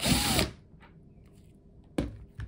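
Cordless drill driver running in a short burst of about half a second as it backs a bolt out, its motor whine rising and then falling away. A sharp click near the end.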